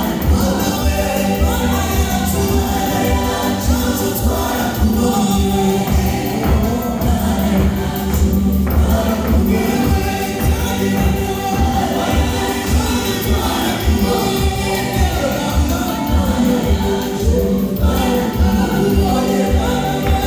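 A choir singing a gospel song over a steady beat.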